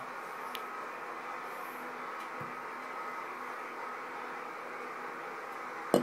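Steady low hiss of indoor room noise, with one faint tick about half a second in.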